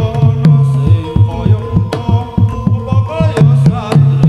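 Javanese gamelan playing: a kendang hand drum leads with a busy, uneven run of deep strokes, some bending in pitch, over the steady ringing of bronze metallophones and kettle gongs.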